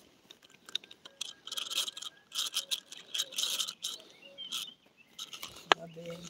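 Spinning fishing reel being handled close up: irregular scraping and small clicks of the spool, line and reel body under the fingers, with one sharp click near the end.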